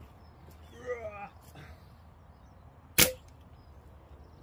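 A single .22 air rifle shot about three seconds in: one sharp crack.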